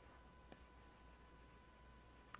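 Near silence with faint, soft scratching of a stylus stroking across a tablet's glass screen while erasing.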